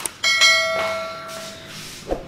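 A bell-like chime struck once about a quarter-second in, ringing and fading over about a second and a half. It is the sound effect of an on-screen subscribe-button bell animation.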